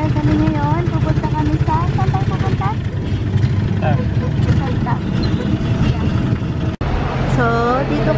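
Small motorcycle engine of a sidecar tricycle running steadily under way, heard from the sidecar, with voices over it. The sound drops out for an instant near the end.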